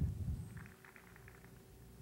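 Faint low background rumble. The last spoken word trails off in the first half second.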